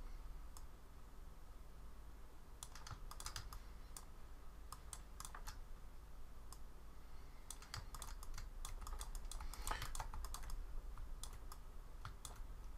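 Computer keyboard keys pressed in small, irregular clusters of sharp clicks, over a faint steady low hum.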